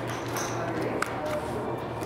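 Playing cards being dealt onto a felt blackjack table, with soft slides and a few light clicks over a low steady hum.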